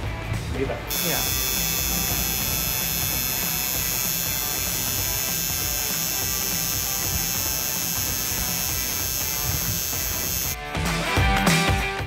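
Coil tattoo machine buzzing steadily as it needles ink into the skin of a forearm. The buzz starts about a second in and stops shortly before the end.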